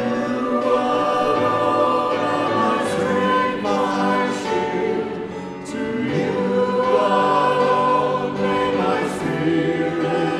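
Many voices singing a hymn together in sustained, steady phrases, with a short dip between phrases midway.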